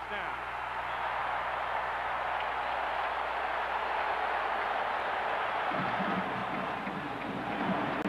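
Stadium crowd cheering a touchdown, a steady loud roar without a break, with some deeper, rougher noise joining in for about the last two seconds.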